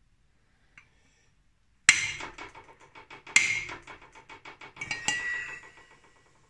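Three hard blows, about a second and a half apart, on the end of a chrome exhaust tailpipe used as a driver to tap a new crankshaft seal into a Harley-Davidson Sportster crankcase. Each blow is followed by a quick fading rattle of the metal pipe, and the last leaves a metallic ringing.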